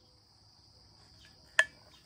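A steady, high-pitched chorus of crickets, with a single sharp click about one and a half seconds in.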